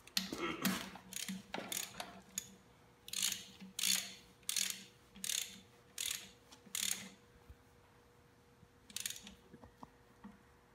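Socket ratchet wrench clicking as it is worked back and forth, tightening the bolts that join a marine transmission to the engine. A quick flurry of clicks comes first, then six even strokes about two-thirds of a second apart, then a pause and one last short burst near the end.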